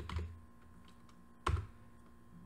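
Two keystrokes on a computer keyboard, one at the start and a sharper one about a second and a half in, the second likely the Enter key opening a new line of code. Between them only a faint steady hum.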